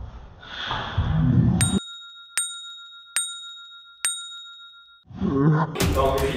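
Bell chime struck four times, evenly about 0.8 s apart, each ding ringing on at the same bright pitch over otherwise dead silence. It is an edited-in sound effect. It follows a second or so of muffled room noise.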